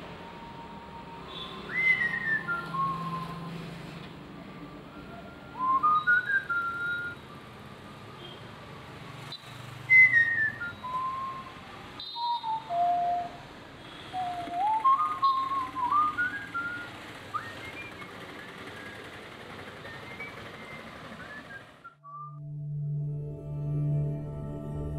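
A person whistling a tune in short, gliding phrases over a steady background hiss. Soft music takes over near the end.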